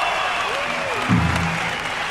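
Concert audience applauding and cheering after a live rock song, with stray instrument sounds from the stage: a short arcing whine about half a second in and a low held note a little after a second.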